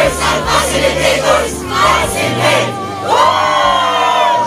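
A group of young people shouting and cheering together, breaking into one long group yell about three seconds in.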